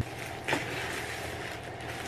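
Rustling and handling noise close to the microphone as a person moves and reaches for things, with one sharp knock about half a second in.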